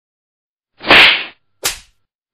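An edited-in whoosh sound effect: a loud rush of noise that swells and dies away about a second in, followed by a shorter swish that falls in pitch.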